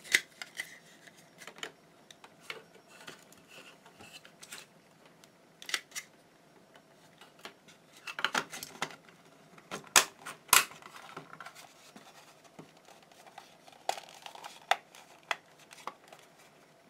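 Plastic casing of a 12 V cordless-drill battery pack being handled and fitted together: irregular clicks and knocks of hard plastic parts, the loudest a pair of sharp clicks about ten seconds in.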